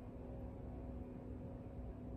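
Quiet room tone: a steady low hum with a faint rumble underneath, unchanging throughout.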